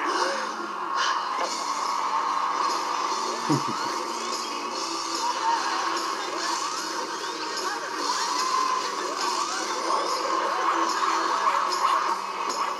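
Sound of a TV talent show played back: music with a noisy crowd and voices from the programme.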